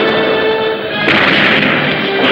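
Continuous film sound effects of explosions and crashing destruction from a giant-monster attack on a city, with a louder surge about a second in. Music plays underneath.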